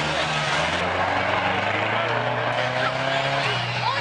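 A stripped two-wheel-drive sedan's engine running hard on a dirt track, its note holding high and dropping near the end. Voices from the crowd are mixed in.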